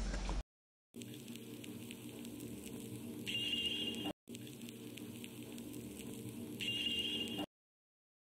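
Edited-in soundtrack clip: a stretch of about three seconds of held tones, with a brighter high tone entering near its end, played twice back to back, with dead silence before and after.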